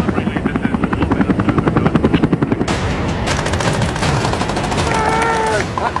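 Sustained rapid machine-gun fire, a long stream of shots in quick succession.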